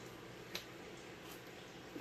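Quiet room tone with a single faint, short click about half a second in.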